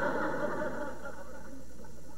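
Studio audience laughing, the laughter fading away over the first second or so and leaving a faint steady hiss.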